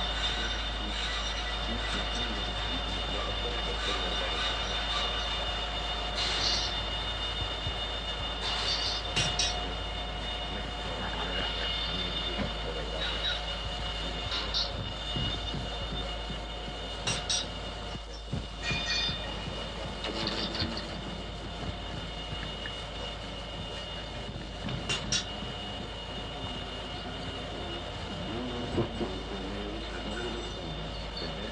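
Industrial noise music made with tools and sound generators, from a live recording: a steady machine-like drone with a few high held tones, broken every few seconds by sharp clanks and scrapes.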